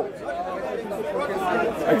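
Several people talking over one another at moderate level, a jumble of chatter with no single clear voice.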